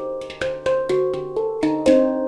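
Handpan tuned to a D Saladin scale, struck by hand in a quick run of ringing notes, about four a second, each note a different pitch that rings on under the next. A louder, sharper strike comes near the end.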